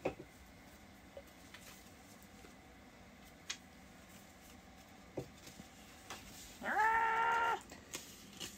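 A short, high, voice-like note: a brief upward glide, then held steady for just under a second near the end. Before it the room is quiet, with a few faint clicks.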